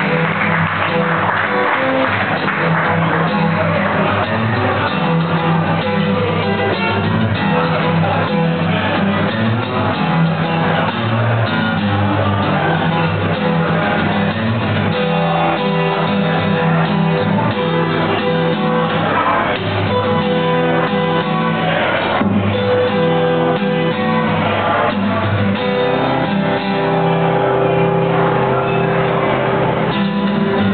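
Live acoustic guitar strumming an instrumental blues intro, with a harmonica playing held notes over it.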